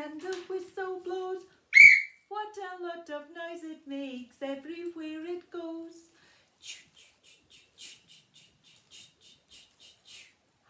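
A woman singing a children's train song without accompaniment, with one short, loud whistle toot about two seconds in. In the second half the singing stops and faint rhythmic 'ch-ch' chugging puffs follow, about two or three a second, imitating a steam train.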